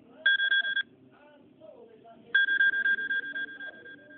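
Electronic alert tone from an iPod Touch 4th generation's speaker: a short beep, then a longer one about two seconds later that fades away, both at the same steady high pitch.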